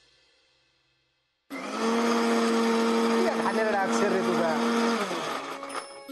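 The last of a music track fades out, and after a brief silence a small electric motor, like a kitchen blender or mixer grinder, starts suddenly about a second and a half in, running with a steady hum, and stops about five seconds in.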